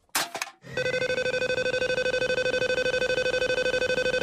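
A big game-show prize wheel spinning: after a short burst of noise as it is sent off, a fast, even clicking with a ringing tone over it that keeps going without slowing.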